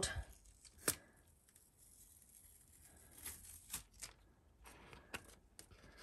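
Faint handling sounds of cardstock being peeled off a gel printing plate, with a sharp click about a second in and a few more clicks near the end.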